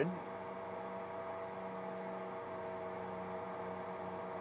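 Steady electrical hum made of a few even, unchanging tones, with nothing else heard.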